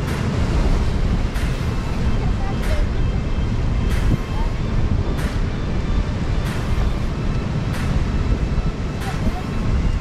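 Strong wind rumbling on the microphone over surf breaking on rocks. A faint tick recurs evenly, a little more than once a second.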